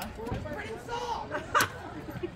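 One sharp crack about a second and a half in, as the chain of a snap cutter tightens around a geode with each pump of the handle: the shell giving under pressure before it splits. Crowd chatter runs underneath.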